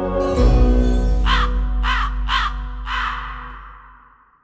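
A crow cawing four times, about half a second apart, over a deep low musical drone that swells in about half a second in and fades away near the end.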